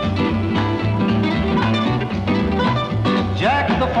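Country instrumental break: mandolin and acoustic guitar picking over a steady bass beat. A voice comes in near the end.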